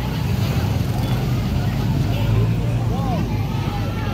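A motorbike engine running steadily close by, its low hum under scattered voices of people along the street.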